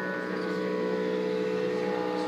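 Live blues: a harmonica holding a steady droning chord, with an acoustic guitar underneath.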